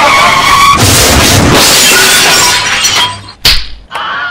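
Background music overlaid with a loud, noisy sound effect that lasts about two seconds and then fades. It ends in a single sharp hit about three and a half seconds in.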